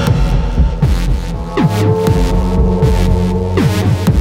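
Hard-techno track made with synthesizers: a heavy, steady low bass drone with sharp falling pitch sweeps about once a second. A held synth note enters about halfway through.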